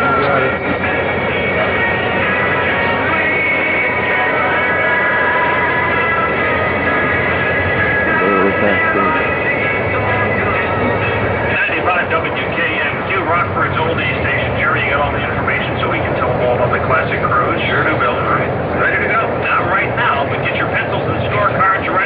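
Indistinct voices mixed with music, with long held notes in the first half and choppier voice sounds in the second half.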